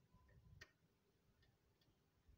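Near silence: a few faint ticks and clicks, the sharpest about half a second in.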